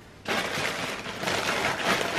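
Cardboard advent calendar crackling and rustling as it is handled, starting about a quarter second in.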